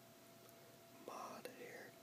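Near silence, then about halfway through a soft whisper begins, with a small sharp click in the middle of it.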